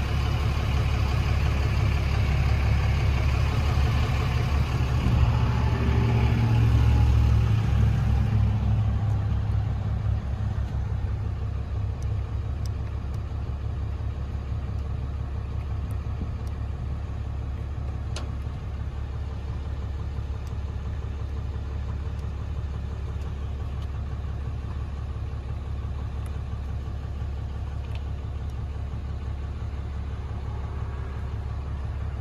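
6.7 Cummins turbo-diesel of a 2011 Ram 3500 idling, a steady low rumble; fuller and louder for the first eight seconds or so, then quieter.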